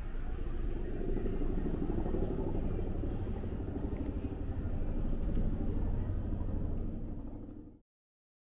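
Street ambience dominated by a steady low rumble, swelling slightly through the middle, that cuts off suddenly near the end.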